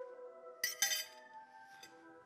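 China teacup and saucer clinking twice, two sharp ringing chinks about half a second apart just after the start, over a sustained chord of background music that fades away.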